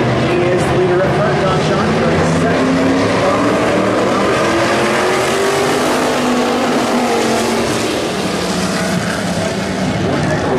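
A pack of street stock race cars running together on an oval track, several engines at racing speed blending into one loud, continuous drone whose pitch slowly rises and falls as the cars go through the turns.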